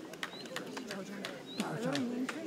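Low conversation among several people outdoors, with a couple of short, high bird chirps.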